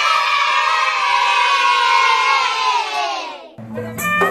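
A crowd of children cheering in one long, held shout that slowly falls in pitch and fades out about three and a half seconds in. Music comes in just before the end.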